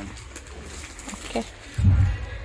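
Brief, faint murmured voices and a low thump near the end.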